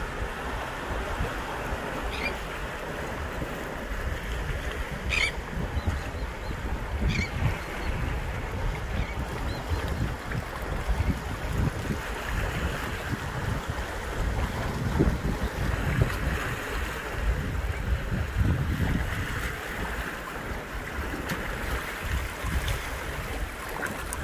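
Sea surf washing against a rocky shoreline, with gusty wind rumbling on the microphone.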